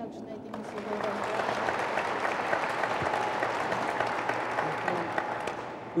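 Audience applauding, building up about half a second in and tapering off near the end.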